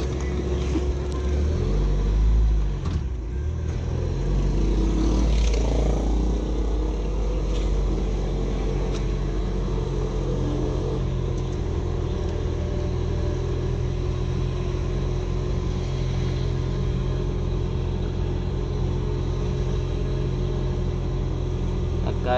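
Engine and road noise of a car heard from inside its cabin while driving slowly through town, a steady low hum. It swells louder about two seconds in, and the engine note shifts over the next few seconds before settling into steady running.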